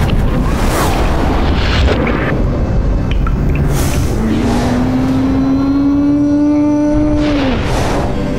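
Cinematic logo sound design: a deep booming rumble with several whooshes, then a sustained tone that enters about halfway through, slowly rises in pitch, and drops away just before the end.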